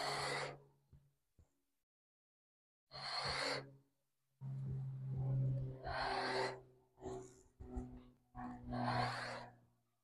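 A woman breathing hard through ab crunches: a series of sharp exhales and inhales, some with a faint voice in them, coming closer together near the end.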